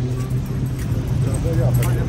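Voices of people talking over the steady low hum of a motor vehicle engine, with the voices loudest near the end.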